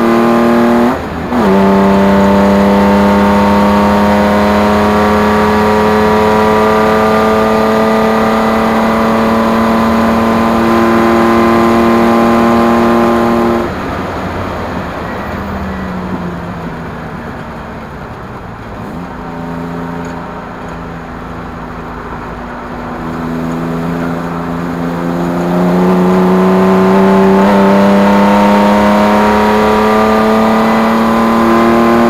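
Endurance race car's engine heard from inside the cockpit under hard acceleration, its note climbing steadily, with a quick upshift about a second in. Just before halfway the throttle comes off: the note drops suddenly and goes quieter through a corner, with a couple of steps in pitch, then it climbs again under full throttle near the end.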